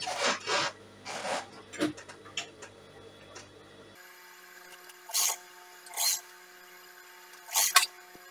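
Hands sliding and smoothing fabric on a sewing-machine table: rustling and rubbing during the first two seconds. After that, a few short rustles over a faint steady hum.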